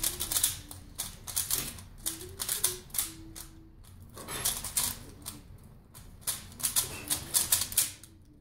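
Plastic speed cube, a Valk Power 3x3, being turned by hand: fast runs of clicking layer turns broken by short pauses.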